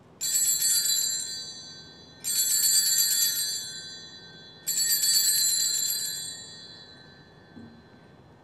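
Altar bells shaken three times, each a brief bright jingling ring that fades over a second or two. They mark the elevation of the chalice at the consecration.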